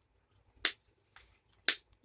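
Two sharp clicks about a second apart.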